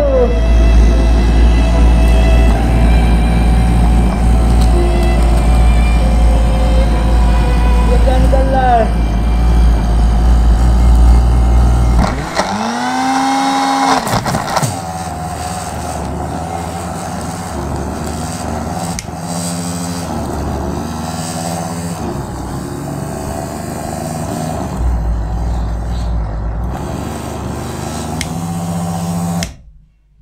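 Electric mixer grinder running, its jar frothing over with foam, under background music; the steady motor sound stops about twelve seconds in, followed by a sweeping rising sound and music.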